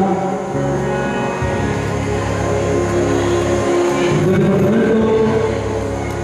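Music with long held notes; a slow, gliding melody line comes in about four seconds in.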